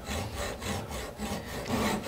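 Hand hacksaw cutting through a metal bracket on a reproduction carburetor, in steady back-and-forth strokes.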